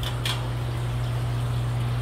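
Steady low hum of aquarium pumps under the even hiss of water running through the tanks of a fish room.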